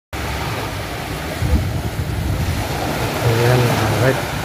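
Steady wind and sea noise with a low, uneven rumble. Near the end a brief voice-like wavering call rises over it.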